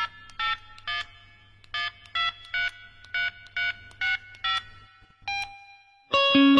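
Touch-tone telephone keypad beeps: about a dozen short dialing tones at uneven intervals, a phone number being keyed in, used as a sound effect at the start of a song.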